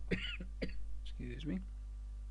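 A man coughing and clearing his throat: a few short, sharp coughs followed by a longer throaty clear, all over in about a second and a half.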